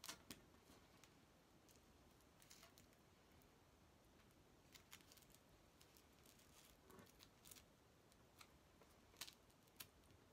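Near silence, with faint scattered clicks and short rustles of hands pinning a strip of hook-and-loop tape onto a fabric square; the sharpest ticks come just after the start and about nine seconds in.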